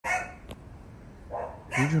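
A single short dog bark right at the start, followed by quiet outdoor background with a faint click; a man begins speaking near the end.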